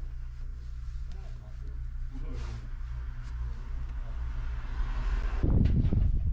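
Case Puma 155 tractor's diesel engine idling steadily, heard from inside the cab as a low, even hum. Just before the end the sound jumps to a louder, rougher low rumble.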